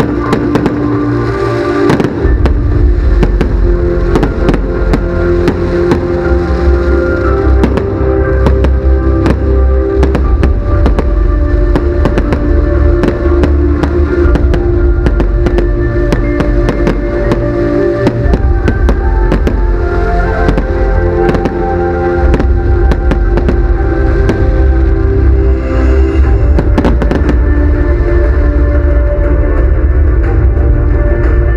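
Fireworks display: a dense run of bangs and crackles from bursting shells and ground fountains, going off over loud music with sustained tones and a deep bass.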